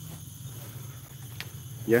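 Crickets and other night insects calling in a steady, high-pitched chorus.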